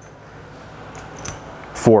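A few faint metallic clicks and a small tink as a steel cap screw is handled against a metal clevis.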